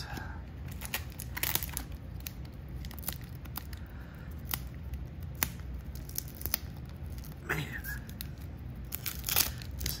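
Wax-paper wrapper of a trading-card pack being peeled and torn open by hand, with a run of irregular sharp crackles and small tears as a stubborn glued seal gives way.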